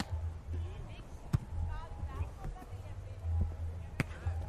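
A beach volleyball being struck by hand during a rally: one sharp slap about a second and a half in, with a few fainter contacts, over a low rumble and faint voices.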